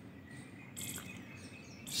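Faint background noise with one short, high chirp a little under a second in and a faint click just after it.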